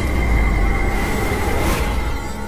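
Logo-intro sound effect: a deep rumble under a hiss, with a thin steady high tone. The hiss swells briefly near the end, and the whole sound then begins to fade.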